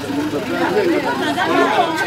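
Speech: a group of people talking.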